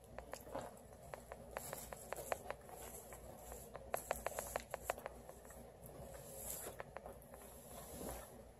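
Plastic cling wrap crinkling and crackling in a flurry of small clicks as wrapped brownies are pulled open, the clicks thickest in the first half and thinning out near the end.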